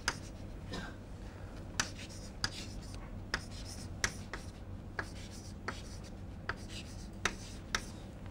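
Chalk writing on a blackboard: about a dozen sharp, irregular taps and short scrapes as numbers and symbols are written, over a low steady room hum.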